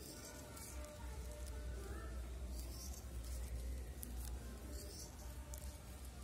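Steel scissors snipping through a folded plastic carry bag: a few short, crisp cuts about one to two seconds apart, over a low steady rumble.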